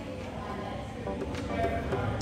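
Low steady rumble of background ambience with faint, indistinct voices. Background music begins to come in about halfway through.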